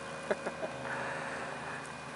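Quiet yard ambience with three short, light clicks in the first second and a brief faint high hiss about a second in.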